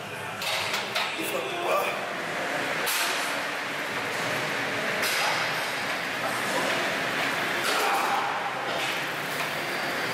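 Indistinct voices in a large, echoing room, with a few short, sharp noises scattered through.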